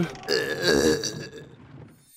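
A man's short, wordless vocal sound: a low, wavering grunt lasting about half a second, fading out afterwards.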